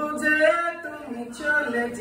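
A person singing, holding notes that step and bend in pitch.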